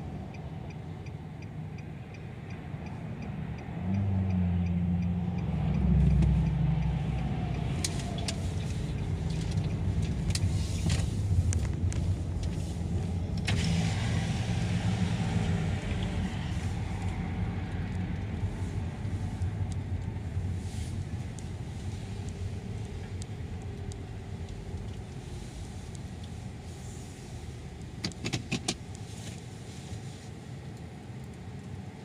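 Car engine and road rumble heard from inside the cabin as the car creeps forward. The rumble swells about four seconds in, holds for several seconds, then settles to a steadier, lower level. A few sharp clicks come near the end.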